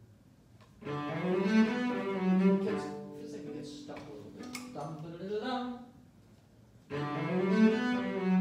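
Solo cello, bowed, playing a slow phrase of several held notes with a slide up between them. It fades out, and after a pause of about a second the same phrase starts again near the end.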